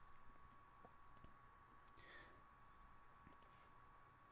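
Near silence: room tone with a faint steady tone and a few faint, scattered computer mouse clicks.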